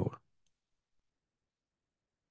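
A faint computer mouse click about half a second in, then near silence.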